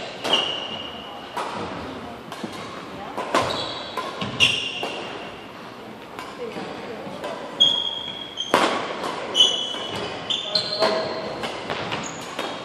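Badminton rally: racket strings hitting the shuttlecock in sharp cracks, irregularly spaced a second or more apart, with short high shoe squeaks on the wooden court floor, echoing in a large hall.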